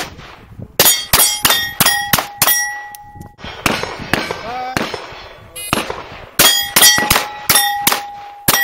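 Rimfire (.22) pistol shots fired in quick strings at steel targets, each hit followed by the ringing clang of a steel plate. Two fast runs of about five shots and plate hits each, a few seconds apart.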